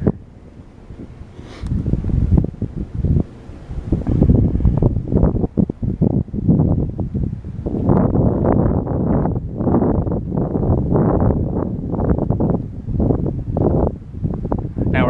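Wind buffeting the camera's microphone in uneven gusts, quieter for the first couple of seconds, then heavier, strongest from about eight seconds in.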